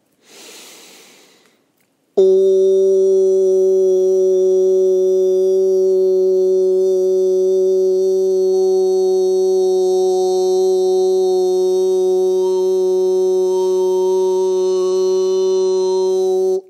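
A man's voice toning: a deep breath in, then one long steady vocal tone starting suddenly a couple of seconds in and held without a break for about fourteen seconds.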